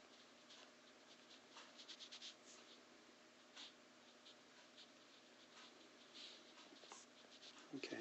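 Faint scratching and tapping of a stylus writing on a tablet, in short irregular strokes with pauses between words.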